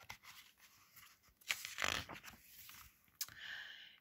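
Paper page of a picture book being turned by hand: a faint paper rustle about halfway through, then a short tap and a soft swish near the end.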